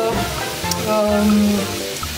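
Diced onion and sweet potato sizzling as they sauté in olive oil in a pan, over background music.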